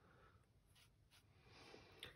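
Near silence, with faint soft strokes of a round watercolour brush dabbing paint onto watercolour paper.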